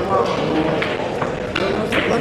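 Voices of people talking in a billiard hall, with a few sharp clicks of carom billiard balls being struck and colliding, the clearest near the end.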